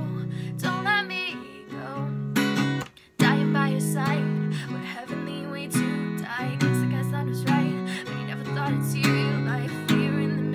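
Acoustic guitar strummed in a steady rhythm with a woman singing over it. The strumming stops for a moment about three seconds in, then comes back in louder.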